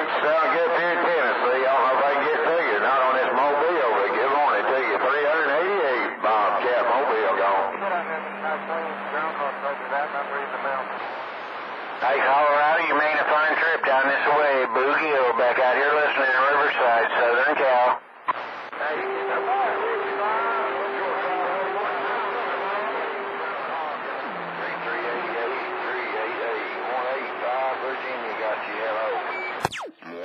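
Voices of distant stations coming in as skip over a CB radio on channel 28, thin and tinny, with a steady tone sounding over them twice. Near the end there is a sharp click as the microphone is keyed to transmit.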